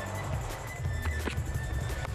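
Music with a strong, steady bass line.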